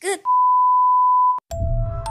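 A loud, steady, high electronic beep tone held for about a second, then cut off sharply, after a very brief pitched sound at the start. Near the end, background music with chiming bell-like notes and a bass begins.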